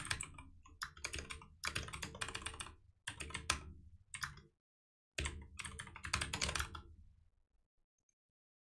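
Typing on a computer keyboard: quick runs of keystrokes with a short pause about halfway, dying away shortly before the end.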